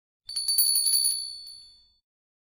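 A single bright bell-like chime that strikes about a quarter second in and rings away over about a second and a half.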